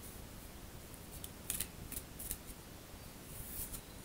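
Reading cards being handled and drawn from the deck: a few short, sharp ticks and snaps against a quiet room.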